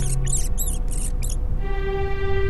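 Rat squeaking: a quick run of short, high squeaks in the first half second or so.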